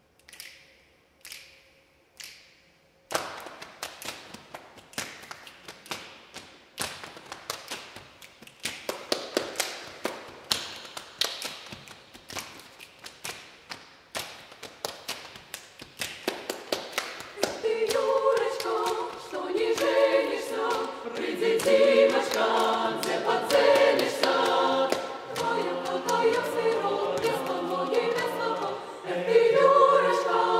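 A cappella choir: a few sparse finger snaps, then a steady snapped rhythm from about three seconds in. A little past halfway the choir comes in singing in harmony over the snaps.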